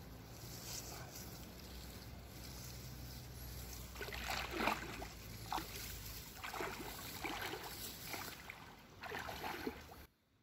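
Shallow stream water splashing and sloshing as a person wades and works with his hands in it: a string of irregular splashes from about four seconds in, over a steady low rumble.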